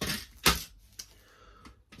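Small plastic fuse block handled and set down on a wooden board, making a few hard clicks. The sharpest click comes about half a second in, a lighter one about a second in, and a faint tick near the end.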